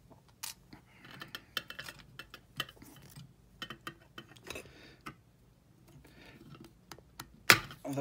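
Small metal clicks and clinks of hand snips handling brass tubing and wire, then one sharp snap near the end as the snips cut through the soft brass.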